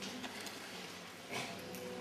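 The last scattered claps of audience applause dying away to a quiet room, with one sharper clap about a second and a half in.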